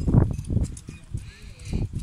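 Wind rumbling and buffeting on the microphone, with a few light knocks and clinks of the dinghy's rigging hardware as a stay wire is fastened at the bow fitting.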